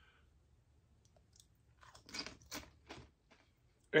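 A person biting and chewing a tortilla chip loaded with cheese dip: about four crisp crunches in the second half.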